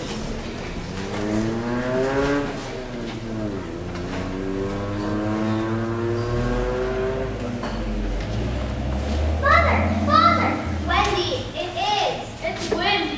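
A child's voice held in long sliding tones, first rising then falling in pitch, then a held tone that slowly rises, followed near the end by a run of short high-pitched calls.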